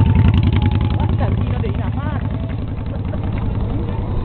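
A motor engine running close by with a fast, even low pulse. It is loudest in the first second or two and then eases slightly. Voices can be heard faintly over it.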